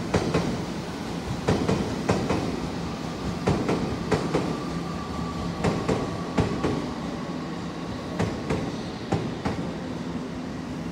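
Odakyu electric trains at a station platform: a steady low hum with a string of irregular clacks, like wheels going over rail joints and points. A faint steady high tone sounds for a few seconds in the middle.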